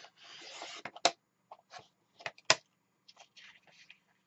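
Sliding paper trimmer cutting a sheet of paper: a short rasping stroke as the cutter head is run along the rail, then two sharp clicks and some light paper scuffing.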